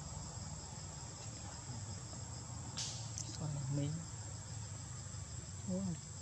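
Steady, high-pitched drone of insects, with a single sharp click about three seconds in.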